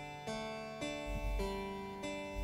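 Pianoteq 8 Pro's modelled F.E. Blanchet harpsichord playing quietly: a simple line of plucked notes, the pitch changing about every half second.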